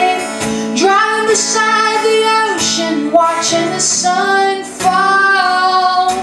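A woman singing to her own strummed acoustic guitar, holding long notes in the melody.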